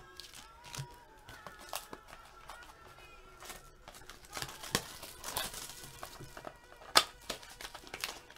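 Trading-card packs in foil wrappers crinkling and a cardboard card box being opened by hand, with scattered sharp clicks and crackles, the loudest about seven seconds in.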